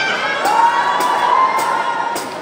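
Concert audience cheering and shouting, one voice rising into a long high shout held for about a second, with a few sharp claps.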